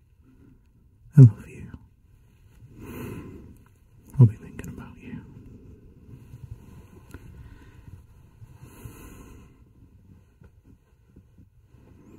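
A man's close-miked voice without words: two short voiced sighs about a second in and about four seconds in, with deep breaths around three and nine seconds and soft breathing between.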